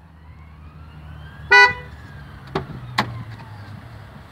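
A car horn gives one short toot about a second and a half in, over a low steady hum. Two sharp clicks follow as the car door is opened.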